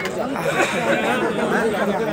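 Several people talking at once: overlapping crowd chatter.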